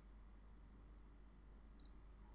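Near silence, then one short high-pitched beep from the EasyTouch GC blood glucose meter near the end: the meter signalling that the blood drop has touched the test strip and the measurement countdown has begun.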